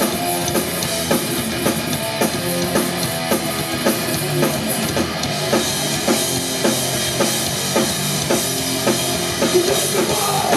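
Live hardcore punk band playing loud: a pounding drum kit with bass drum, distorted electric guitars and bass guitar, in a steady beat.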